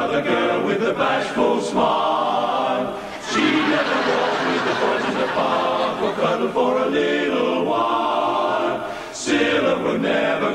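Male close-harmony chorus singing unaccompanied, many voices in chords, with short pauses between phrases about three seconds in and again near the end.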